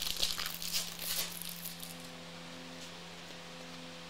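Shiny plastic wrapper of a trading-card pack crinkling and tearing as it is peeled open by hand, for about the first two seconds. After that only a faint steady hum remains.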